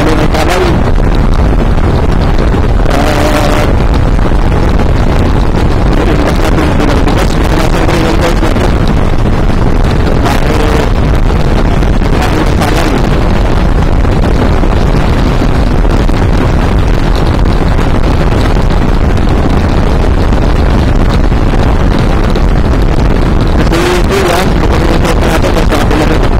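Loud, steady wind noise on the microphone of a motorcycle riding at speed, with the bike's engine and road noise underneath.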